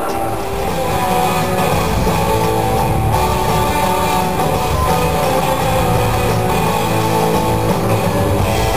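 Live rock band playing an electric-guitar-led passage at arena volume, with bass and drums; the low end comes in fully just after the start. Heard from the audience.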